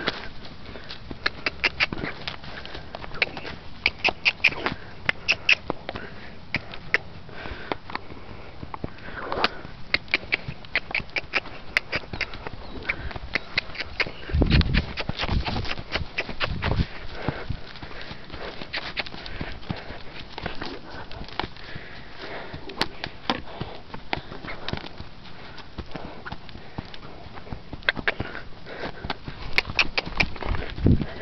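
A horse's hoofbeats as it trots and canters loose over sandy ground: runs of quick, short strikes, with a few heavier, deeper thumps about halfway through.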